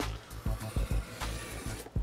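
A craft knife drawn along a steel ruler, slicing through a frosted sticker sheet in one steady scraping stroke that stops sharply near the end. Quiet background music runs underneath.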